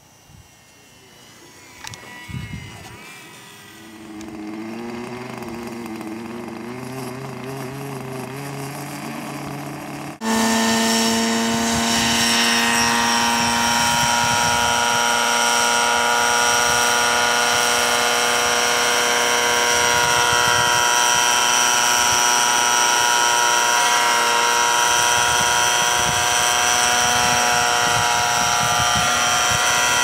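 Radio-controlled scale helicopter flying, a loud steady whine made of several fixed pitches, which cuts in suddenly about ten seconds in. Before that there is only a fainter, wavering motor hum.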